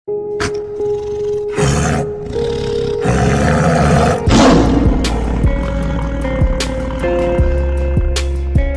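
Intro music for a logo sting: held tones with rising swells, a lion's roar sound effect about four seconds in, then a beat of sharp clicks and low hits.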